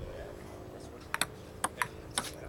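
A table tennis ball struck by paddles and bouncing on the table: four sharp clicks, two close together about a second in and two more near the end.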